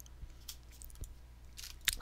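Faint, scattered short clicks over a low steady hum, in a pause between speech.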